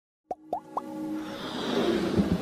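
Intro jingle for an animated logo: three quick pops rising in pitch, about a quarter second apart, then a swell building into electronic music.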